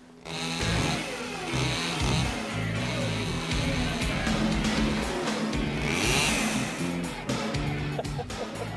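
Stihl chainsaw running and revving as it cuts through tree branches, with music playing over it.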